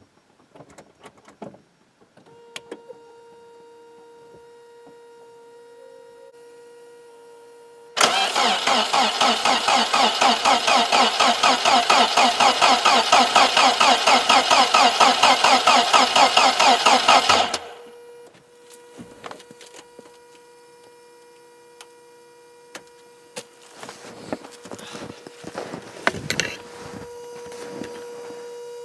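Mercedes petrol engine cranked by its starter motor for about nine seconds in an even, pulsing rhythm, without firing. It stops abruptly and the engine does not catch, which points to a car that gets spark but not enough fuel after long storage. A faint steady buzzing is heard before and after the cranking.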